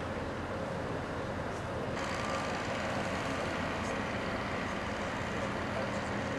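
Steady running of heavy vehicle engines at a construction site. The sound changes abruptly about two seconds in.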